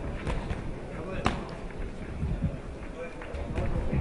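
Boxing bout in a hall: a crowd murmuring, with two sharp smacks of gloves landing, the louder just after a second in, and dull thuds of the boxers' feet on the ring canvas.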